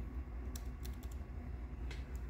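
A few faint, short clicks, with a low steady hum underneath.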